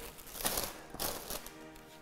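Thin plastic produce bag crinkling in two brief rustles as a bunch of komatsuna leaves is pulled out of it, over faint background music.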